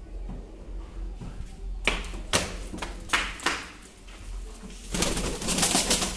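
Fancy pigeons: a few short, sharp sounds from about two seconds in, then a denser, louder stretch of sound near the end.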